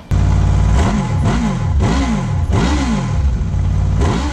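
Honda VFR800's V4 engine running briefly at a steady speed, then revved in three quick throttle blips, its pitch rising and falling each time, with a fourth rev building near the end. The uneven firing order of its cylinders gives it the VFR's distinctive sound.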